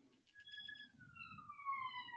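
A faint siren wailing in the background: a short steady tone about half a second in, then a long, slow fall in pitch through the second half.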